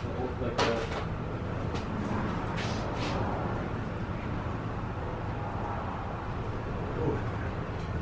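A few sharp knocks and handling noises as a cardboard box and its packing are moved about by hand, over a steady low hum.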